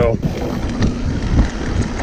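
Wind rushing over the microphone and mountain bike tyres rolling on a dirt trail as the bike heads downhill, with a few knocks from the bike going over bumps.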